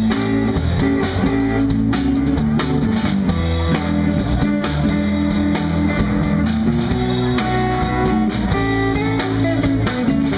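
Live blues band playing an instrumental passage with no singing: electric guitars over drums.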